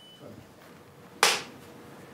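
A film clapperboard's clapsticks snapped shut once, about a second in, with a single sharp clack that marks the start of the take.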